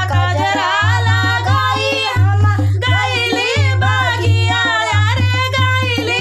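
Women singing a rustic Kaharwa folk song, with a hand drum keeping a steady repeating beat under the voices.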